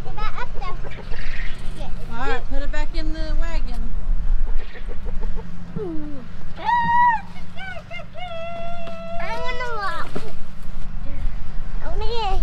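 Young children's voices talking and calling out, high-pitched, with a few drawn-out sung or called notes near the middle, over a steady low hum.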